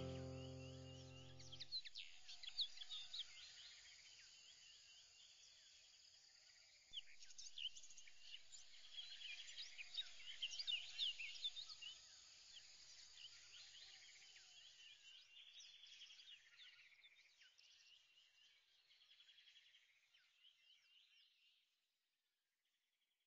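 Faint chorus of many short, overlapping bird chirps on a background track. It follows a music chord that fades out in the first two seconds, swells about seven seconds in, and fades away just before the end.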